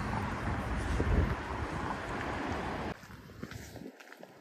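Gusty wind rumbling and buffeting on the microphone. It cuts off abruptly about three seconds in, leaving a much quieter background.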